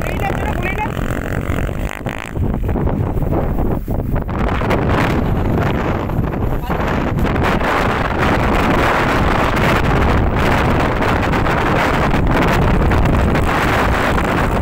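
Dirt-bike engines revving as riders climb a steep hill, mixed with wind buffeting the microphone.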